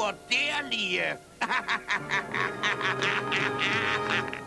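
Cartoon duck voices quacking in a fast run of short, chattering syllables after a brief spoken phrase, over background music.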